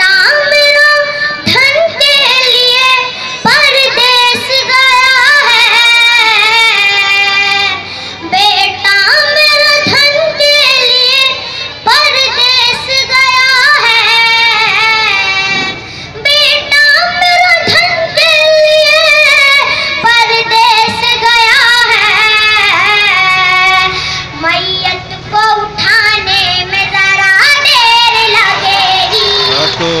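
A girl singing an Urdu ghazal solo into a microphone over a PA, in long, ornamented melodic phrases with short breaths between them.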